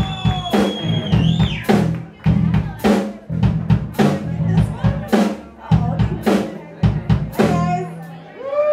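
Live rock band playing an instrumental groove: drum kit keeping a steady beat of about two hits a second under a heavy electric bass line.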